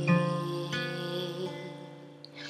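Acoustic guitar with a capo, a chord strummed at the start and another softer stroke under a second in, the strings ringing on and fading out.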